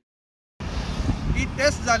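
The sound drops out completely for about half a second, then returns as a man's speech over steady road-traffic noise.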